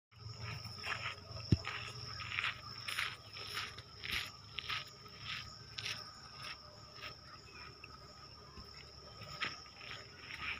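Footsteps at a steady walking pace, a little under two steps a second, fading out about seven seconds in, over a continuous high insect drone. A single sharp click about a second and a half in.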